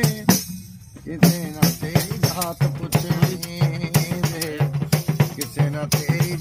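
Hand-struck tambourine with metal jingles beating a steady rhythm under a man's singing voice. The playing drops away briefly about half a second in and picks up again just after a second.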